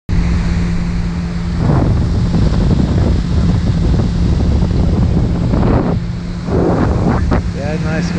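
Pontoon boat under way: a steady outboard motor hum with wind buffeting the microphone and water rushing past the hull.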